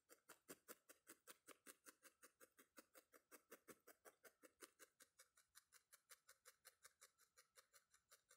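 Faint, quick ticking of a felting needle stabbing repeatedly through wool into a foam pad, about five strokes a second, compacting the wool of a felted nose.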